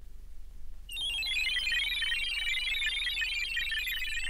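Opening of an electronic track played from a vinyl record: a low hum, then about a second in a dense, rapid, high-pitched warbling synthesizer pattern starts and runs on steadily.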